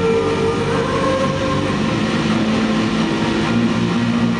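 Live band music in an instrumental passage: long held notes over a steady lower line, with no singing.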